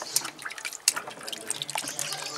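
Water splashing and dripping in a plastic tub as hands scoop it over a guinea pig to rinse it, with a few irregular sharp splashes.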